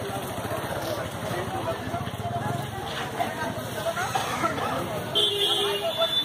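People talking in the background of an open-air market, with a short horn toot near the end.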